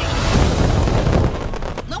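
Film sound effects of a biplane in flight: a loud, dense rush of wind and engine noise with a heavy low rumble.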